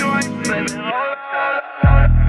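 Trap beat: a melodic line over hi-hats, then a short break with the low end cut out, before a heavy 808-style bass drop hits near the end with a falling sweep into the sub-bass.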